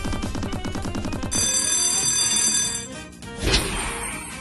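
Slot game sound effects over game music: rapid ticking as the reels spin for about a second, then a high ringing tone held for about a second and a half, and a single thud about three and a half seconds in as the final Money Spins re-spin lands.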